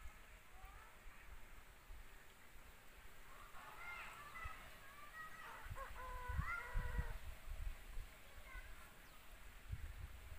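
Quiet pondside ambience with a cluster of faint, distant animal calls, some level and some rising in pitch, from about four to seven seconds in. A few low rumbles on the microphone come near the end of the calls.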